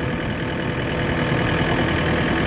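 Engine of a ride-on machine running steadily at an even speed as it travels.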